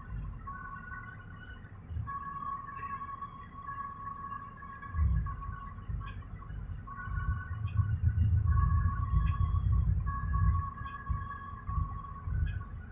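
Low, varying rumble of a car idling at an intersection with traffic passing, under faint held electronic tones that come and go like quiet music.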